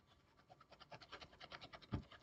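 Faint, rapid scratching of a stylus on a pen tablet as handwritten ink is erased, starting about half a second in.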